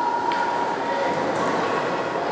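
Ice-rink game ambience: steady crowd and arena noise with a long, steady horn-like tone that fades a little over a second in, followed by shorter held notes at other pitches.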